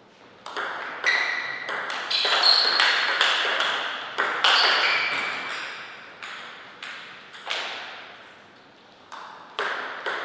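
Table tennis rally: the celluloid ball clicks back and forth off paddles and the table in quick succession for about five seconds. Then come a few slower, single ball knocks as the ball is bounced ahead of the next serve.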